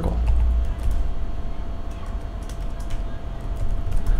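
Computer keyboard typing: scattered, irregular key clicks over a steady low hum.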